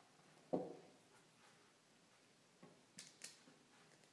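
Near silence with a soft thump about half a second in and a few faint clicks near three seconds: the battery charger's cord and plug being handled as it is plugged back into the wall socket.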